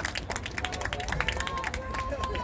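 Voices calling out across an outdoor soccer field, one call falling in pitch near the end, over a steady low background and many scattered sharp taps.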